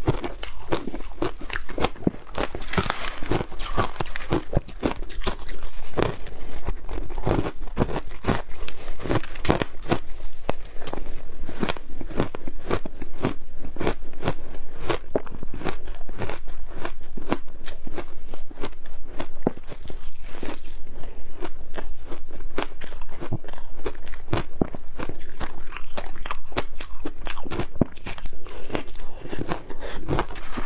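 Shaved ice and frozen fruit ice being bitten and chewed close to the microphone: a dense, continuous run of crisp crunches and crackles, many a second.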